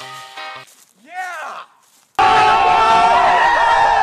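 A group of teenagers shouting and cheering excitedly all at once, loud and sudden from about two seconds in and cut off abruptly at the end. Before it, background music fades out and a short swooping voice sound is heard.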